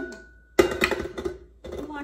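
Stainless steel mixing bowl being set down and twisted into the base of a tilt-head stand mixer: a click and a brief thin ring, then a clatter of metal on metal about half a second in.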